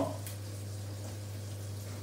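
Fish frying in butter in a pan, a steady sizzle, over a steady low hum.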